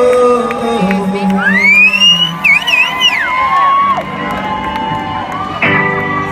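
Live rock band playing, with electric guitar and drums, while a large crowd cheers and whoops; a high, wavering, gliding line rises over the music about a second and a half in.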